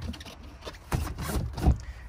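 Knocks and scrapes of a loose boat seat base being handled by hand, in a short cluster with the sharpest knock near the end.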